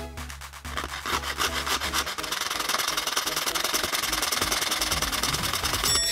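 Small hand saw cutting a thin plastic cable-cover strip with fast, even back-and-forth strokes, starting about a second in. Background music plays under it for the first two seconds.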